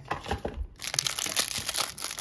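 Clear plastic wrap around a pack of baseball cards crinkling as fingers handle and work it open, in quick irregular crackles with a short lull about half a second in.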